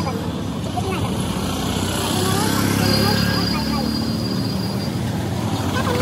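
Street traffic: a motor vehicle's engine rumbling past, swelling and fading in the middle, with people's voices in the background.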